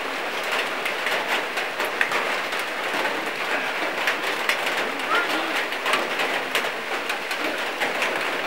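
Steady rain falling and pattering, a dense hiss of fine ticks, with faint voices in the background.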